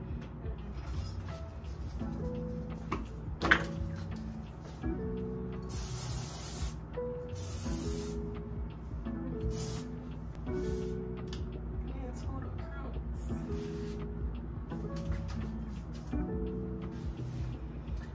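Short hissing bursts from an aerosol spray can: two longer sprays about a second apart, then a brief third, over background music. A single sharp click comes a few seconds before the spraying.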